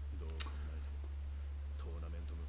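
Faint speech over a steady low hum, with one sharp click about half a second in.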